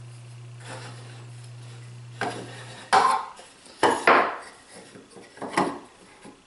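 Steel square being handled and set down on a pine board, giving several sharp metallic clinks and knocks in the second half.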